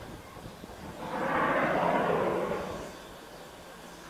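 Steam hissing from the standing steam locomotive 03 1010: a rush of noise that swells about a second in and fades out after about two seconds.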